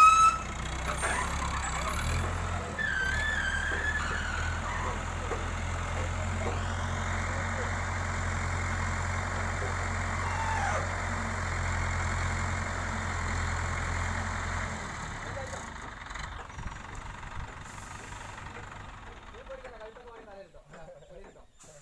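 Diesel engine of an ACE 12XW pick-and-carry crane running steadily under load as it hoists a log, dropping back and quietening about fifteen seconds in.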